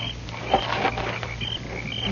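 Night-time chorus sound effect of small creatures chirping, short high chirps repeating roughly twice a second, with a brief rustle about half a second in.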